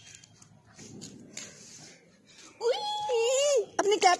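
A small child's high-pitched, drawn-out whining cry lasting about a second, starting a little past halfway, after a quiet stretch.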